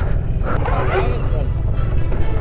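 Indistinct voices talking over a steady low rumble, with a sharp click about half a second in.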